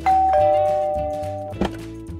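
Two-note ding-dong doorbell chime: a higher note, then a lower one a moment later, both ringing and fading away over about a second and a half.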